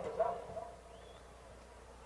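Quiet background of an old broadcast recording, a low steady hum and hiss, with a brief faint pitched sound in the first half-second.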